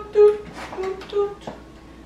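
Background music: a light melody of a few plucked notes on a guitar-like string instrument, each note ringing briefly and fading.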